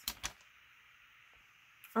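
A few quick clicks from a Fiskars paper trimmer's sliding blade carriage, then a quiet stretch of faint hiss.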